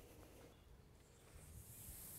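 Near silence, then about one and a half seconds in a faint, steady high hiss of pop-up lawn sprinkler spray heads running comes in.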